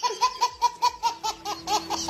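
Rapid bursts of laughter, about five a second, with a high pitch that rises and falls on each 'ha'. A steady low tone comes in about halfway through.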